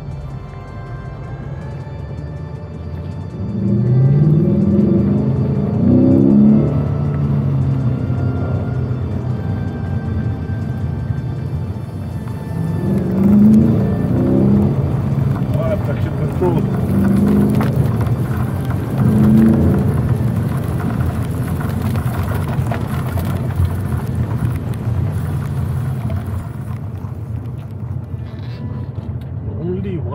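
Ford Mustang GT's 5.0-litre V8 accelerating hard several times, its note climbing and breaking off at each gear change, over a steady low rumble.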